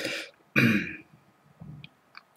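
A man clearing his throat: a breathy rasp, then a rougher one about half a second later, and a faint short vocal sound near the end.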